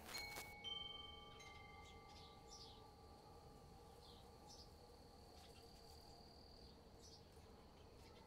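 Faint chime tones: a few metal chimes ring out in the first second or so and hang on, slowly fading away over near silence.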